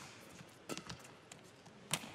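Badminton racket strikes on a shuttlecock during a rally: two sharp hits, the second and louder one near the end, with fainter taps in between.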